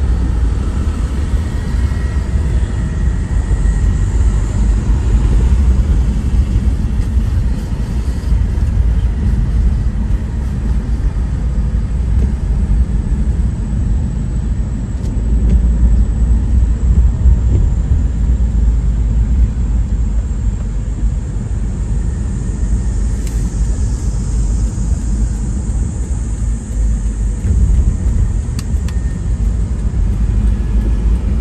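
A car driving through slow city traffic: a steady low rumble of road and engine noise.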